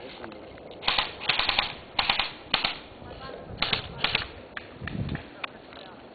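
Airsoft electric guns firing several short bursts of rapid clacking shots, followed by a few lone clicks.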